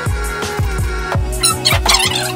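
Background music with a steady drum beat under held tones. Near the end there is a short warbling, quickly wavering high sound.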